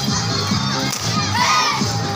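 Young voices shouting and cheering together over loudspeaker music with a steady low bass line.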